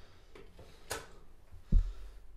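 Dial-gauge Rockwell hardness tester at work on a hardened Damasteel blade: a faint click about a second in, then a short, heavy, low thump near the end as the test load is worked. The reading comes out at 63 HRC.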